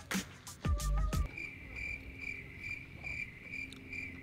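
Background music cuts off about a second in, leaving a cricket chirping evenly, about two and a half chirps a second: the stock 'crickets' sound effect for an awkward silence.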